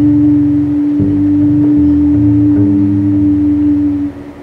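Live jazz quartet of voice, violin, double bass and drums holding one long steady note that ends sharply near the close, while the double bass moves through several lower notes underneath it.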